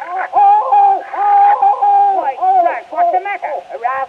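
A man's voice on an early acoustic phonograph recording yelling out in comic pain while being shaved: one long held high cry, then a string of short yelps that bend up and down in pitch from about halfway through.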